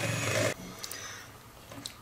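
Electric hand mixer running with its beaters in a strawberry-banana cream mixture in a plastic bowl, switched off about half a second in. Then faint handling sounds with two light clicks.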